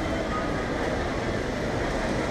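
Steady mechanical rumble of a moving escalator.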